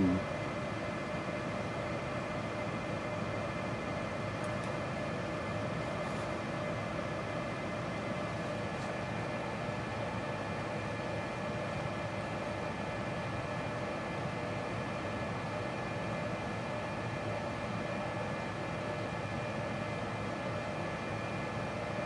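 Steady background room noise: a constant hiss with a few faint, unchanging hum tones and no distinct event.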